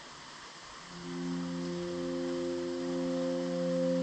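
Steady hiss of falling rain, joined about a second in by soft ambient music of long held tones that swells gradually louder.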